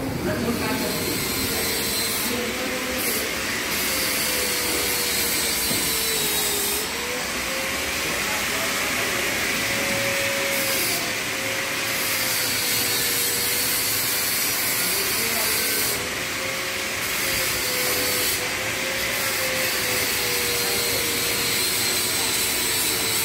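Steady mechanical hiss and whirr of running machinery, with a faint hum that wavers slowly in pitch throughout.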